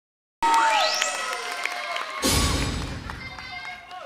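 Electronic intro music over a hall's PA: it starts abruptly with a rising synth sweep and held tones, then a deep bass boom hits a little after two seconds and rings away.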